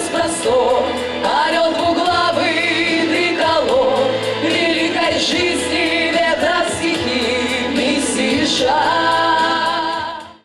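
Female vocal ensemble singing a song together into microphones over musical accompaniment, amplified through loudspeakers.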